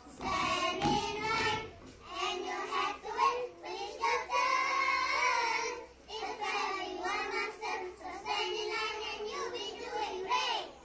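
A group of young children's voices performing a choral-speaking piece in unison, in sing-song phrases with a longer held note about four seconds in.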